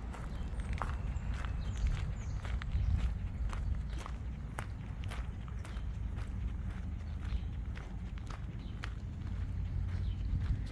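Footsteps crunching on a gravel road at an even walking pace, about two steps a second, over a steady low rumble.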